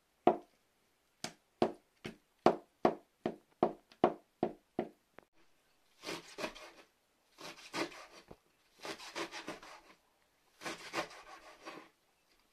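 A kitchen knife chopping hard-boiled eggs on a cutting board, in sharp knocks about two or three a second. After a pause about halfway through, longer rasping runs of quick strokes come as the knife chops green leaves on a board.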